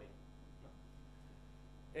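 Steady low electrical mains hum with room tone during a pause in speech, with one short soft spoken word about half a second in.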